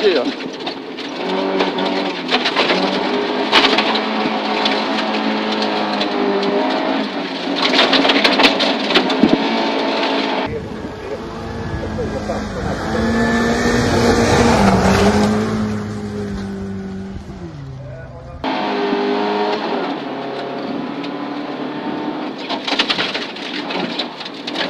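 Volvo 240 rally car's engine pulling hard, heard from inside the cabin, its pitch stepping as it goes up through the gears. About ten seconds in, the sound switches for some eight seconds to the car heard from the roadside as it comes past, its engine note rising and then falling. It then returns to the cabin sound.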